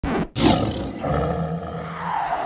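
A lion roar: a short first sound, a brief break, then a loud roar about a third of a second in that carries on with a low rumble.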